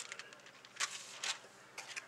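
Faint handling noises: a few soft, brief clicks and rustles as a spool of lace trim is reached for and picked up off the table.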